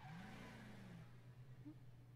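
Near silence: a faint steady low hum, with a faint tone that rises and falls in about the first second.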